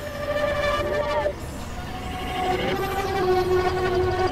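Experimental synthesizer drone: several held tones stacked like a chord, with short sliding pitches over them and a low noisy bed beneath. The chord cuts off a little over a second in, and a new pair of held tones comes in past the middle.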